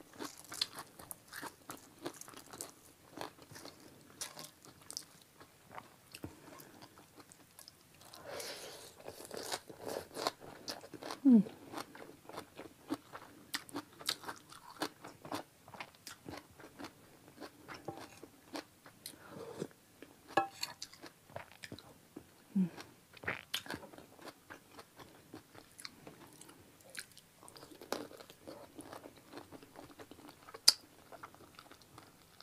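Close-miked eating of chicken feet and noodles in curry soup: irregular chewing, biting and wet mouth clicks. Twice, about a third and three quarters of the way in, a brief low hum falls in pitch.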